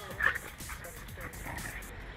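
A dog gives one sharp yelp about a quarter second into rough play-wrestling between two dogs, followed by a few smaller yips, with music underneath.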